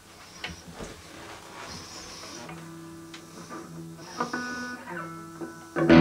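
Electric guitar being handled and picked quietly, with clicks of strings and a few notes ringing. Just before the end a loud strummed chord starts.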